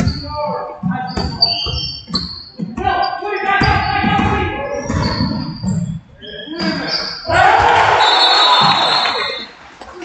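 A basketball bouncing on a hardwood gym floor, with sneaker squeaks and players' shouts echoing in the gym. About seven seconds in, a loud burst of noise lasts nearly two seconds, then dies away.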